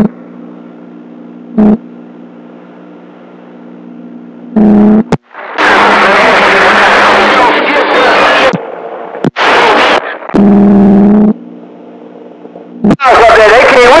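Radio receiver audio of stations keying up on the channel: a steady hum with abrupt short bursts that cut on and off. About five and a half seconds in, there are roughly three seconds of loud, noisy, garbled signal. A voice comes through near the end.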